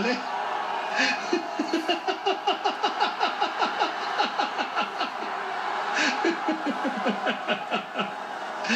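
A man's long laugh: a quick run of short 'ha' pulses, about five a second, lasting several seconds.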